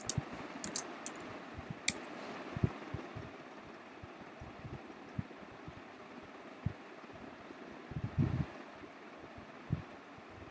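Steady microphone hiss with a few light, sharp clicks in the first two seconds, from computer keyboard and mouse use, and a dull low thump about eight seconds in.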